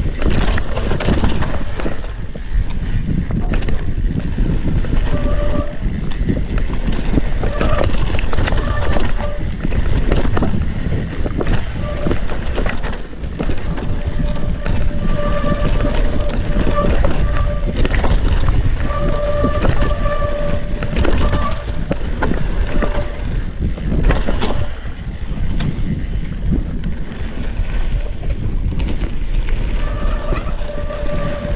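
Mountain bike riding fast down a rough, technical downhill trail: a steady rumble of wind on the microphone and tyres over roots and rocks, with frequent knocks and rattles from the bumps. Several times the disc brakes squeal briefly as the rider brakes.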